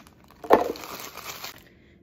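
Banana chunks being put into a plastic blender jar: a loud thump about half a second in, amid rustling and crackling that stops after about a second and a half.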